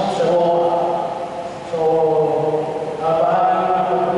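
A man chanting or singing into a microphone through a PA system, holding long, level notes in a slow melody, with a short break a little before two seconds in.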